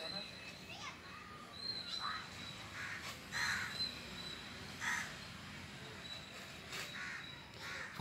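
Faint outdoor sound: a few short bird calls at intervals of a second or more, with faint distant voices.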